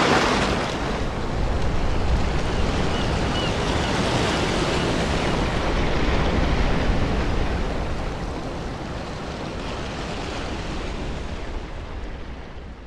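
Steady rush of ocean surf, fading slowly over the last few seconds.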